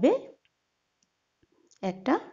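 Speech only: a woman narrating in Bengali. Her phrase trails off at the start and she begins speaking again near the end, with near silence in between.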